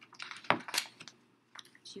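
A picture book being closed and set down: a quick flurry of page and cover clicks and taps, the sharpest knock about half a second in.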